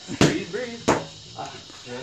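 Two sharp smacks of boxing gloves striking focus mitts, about two-thirds of a second apart.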